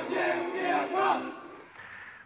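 A group of voices singing together on the soundtrack of a film playing in a screening room, fading out about a second and a half in.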